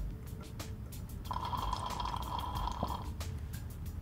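Deionised water being drawn up into a glass pipette by a pipette bulb filler, a steady sound lasting nearly two seconds, starting just over a second in.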